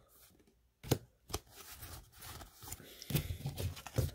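Pokémon trading cards handled and flipped through one at a time: two short card snaps about a second in, then soft sliding and rustling of the cards with a few light clicks.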